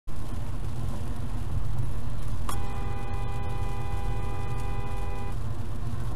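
Steady tyre and road rumble inside a car cabin at about 50 mph on a wet road. About two and a half seconds in, a two-note car horn sounds and is held for nearly three seconds, then stops.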